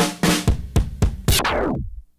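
Recorded drum kit (maple Ludwig with an Acrolite snare) playing a quick fill of about half a dozen hits, played back through tape flanging. Hand pressure on the tape reel makes the ringing tail sweep downward in pitch before it cuts off abruptly.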